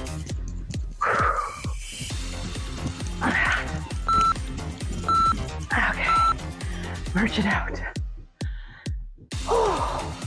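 Workout background music with a steady beat, over which an interval timer gives three short, identical beeps a second apart, counting down the last seconds of a round. The music drops out briefly near the end, then comes back in.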